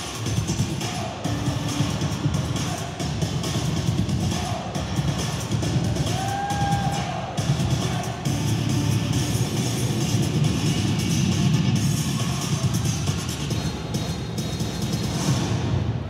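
Dance music with a steady drum beat, stopping right at the end.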